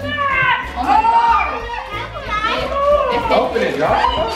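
Several children talking and exclaiming excitedly over one another, their voices high and sliding in pitch.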